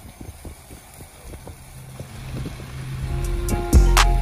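Low road rumble inside a moving car. Background music with a deep bass then fades in and gets louder over the last second or so, with a heavy bass beat landing just before the end.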